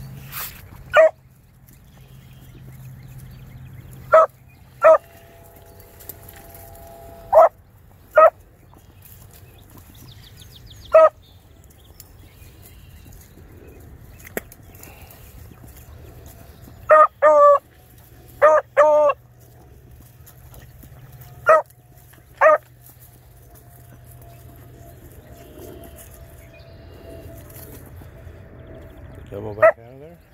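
Beagle barking in short, sharp calls, singly and in pairs, with a run of longer, wavering bays about two-thirds of the way through. This is a hound giving tongue as it noses through brush on a scent.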